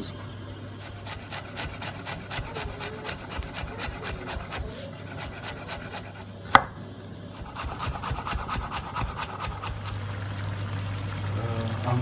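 Kitchen knife chopping fresh coriander on a wooden chopping board in quick, even strokes, with one sharper knock a little past halfway.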